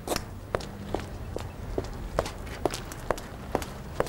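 Footsteps of a person walking briskly on a concrete sidewalk, a crisp, even tread of about two steps a second.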